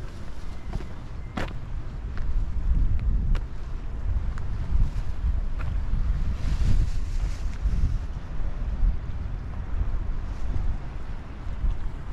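Wind buffeting the microphone of a handheld camera, a gusting low rumble that swells and eases, with a few sharp clicks, the loudest about a second and a half in.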